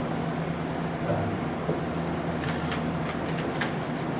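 A steady low electrical or machinery hum in a small meeting room. Faint paper rustles and light clicks come in during the second half.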